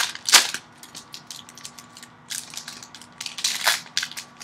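Trading-card pack wrapper crinkling and cards sliding against one another as a pack is handled and opened, in short crisp swishes. The loudest swishes come just after the start and shortly before the end, with a quieter stretch in between.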